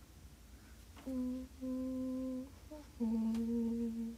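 A young woman humming a slow tune in three held notes at a low, steady pitch: a short one about a second in, a longer one right after, and a long one from about three seconds in.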